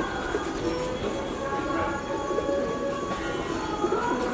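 Mantra chanting held on long, steady notes that change pitch slowly, with pigeons cooing.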